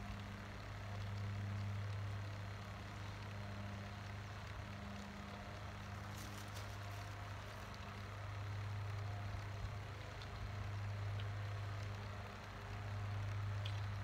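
SHURflo 4008 115 V diaphragm pump running with a steady low hum that swells and fades slowly in loudness. It is self-priming, pulling pond water up the empty intake pipe and through the garden hose before any water reaches the hose end.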